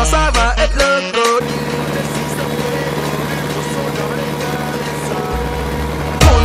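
Background music with a beat for about the first second and a half. It then gives way to a tractor's diesel engine running steadily at an even pitch, and the music's bass comes back in near the end.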